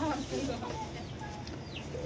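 Chickens chirping: a few short, high, falling chirps spaced about half a second to a second apart.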